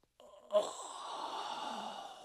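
A young goat's long, breathy exhale like a sigh. It starts suddenly about half a second in, lasts about a second and a half and fades away near the end.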